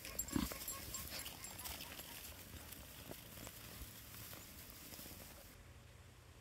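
A flock of sheep feeding on hay: faint rustling and many small clicks of chewing and pulling at the hay, with one short low sound about half a second in. Near the end it cuts suddenly to a quiet room with a faint steady hum.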